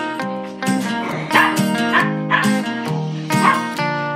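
Acoustic guitar background music, with small dogs yipping and barking several times over it.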